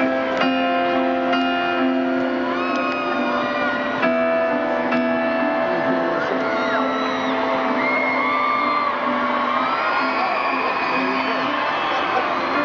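Piano chords struck and left to ring, played live through a stadium sound system, with fans' high screams and whoops rising over them in the second half.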